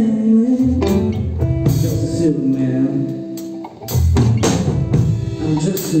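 Live band of electric guitar, bass guitar and drum kit playing, with cymbal strikes throughout; the music drops back briefly a little past halfway, then the full band comes back in with a crash.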